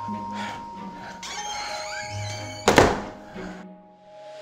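Background music with held tones, and a single loud thunk a little under three seconds in, a front door being shut.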